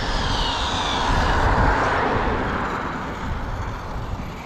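Arrma Limitless 8S electric RC speed-run car driving back at easy throttle, a faint falling whine from its motor over a steady rushing noise.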